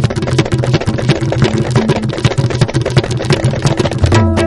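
Instrumental closing music: rapid drum strokes over held low notes.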